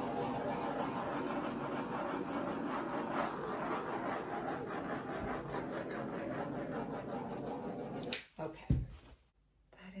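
Small handheld torch burning with a steady hiss as its flame is played over wet poured acrylic paint. The hiss cuts off about eight seconds in when the torch is shut off.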